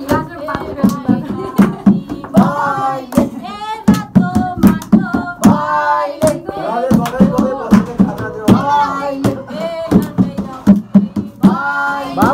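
A small group singing a song together while clapping their hands in a steady rhythm.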